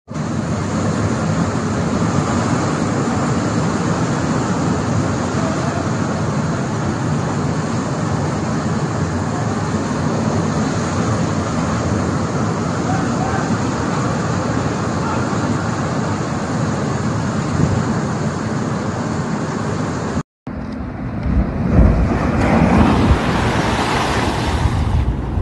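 Steady, loud roar of cyclone-driven surf, wind and heavy rain. After a sudden cut near the end, a wave crashes against a seawall in a louder surge of breaking water.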